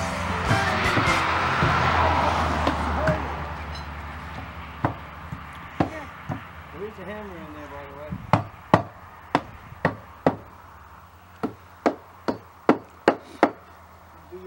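Background music fading out, then a dozen or so sharp hammer blows on a wooden shingled wall, irregular at first and about two a second near the end.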